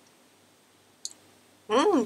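Quiet room tone broken by a single short click about a second in; a woman starts speaking near the end.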